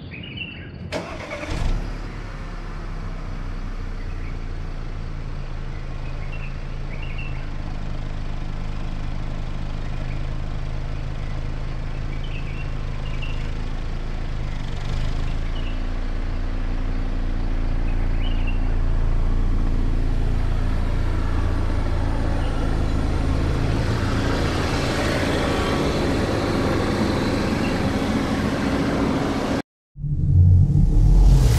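Audi A5's engine starting about a second in, flaring up briefly and then settling into a steady idle, heard from behind at the exhaust. A few birds chirp faintly, and the sound cuts off suddenly just before the end.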